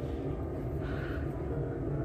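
Faint rustling of hair as bobby pins and U-pins are worked out of it by hand, over a steady low background hum.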